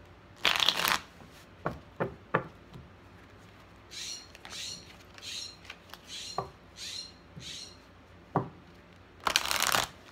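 A deck of tarot cards shuffled by hand: two loud shuffling bursts, one about half a second in and one near the end, with a few sharp taps of the cards in between. In the middle a jay outside calls about seven times in a row, short harsh calls a little under twice a second.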